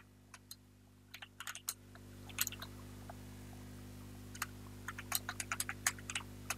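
Typing on a PC keyboard: scattered keystroke clicks, a few near the start, a small cluster in the second and third seconds, then a quicker run of keystrokes in the last second and a half, over a steady low electrical hum.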